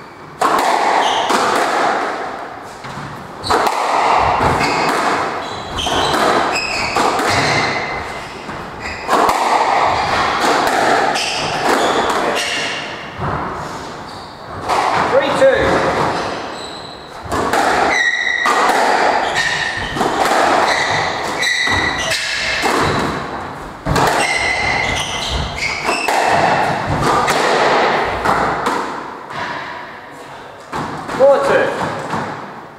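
Squash rally: a hard rubber squash ball struck by rackets and thudding off the front and side walls again and again, each hit ringing in the enclosed court, with short squeaks that fit shoes on the wooden court floor.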